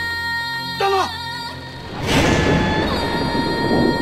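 Film soundtrack: music with long held tones and a falling slide of pitch near one second in. About two seconds in, a sudden loud splash-like rush of noise breaks in and carries on under the music as bodies plunge into water.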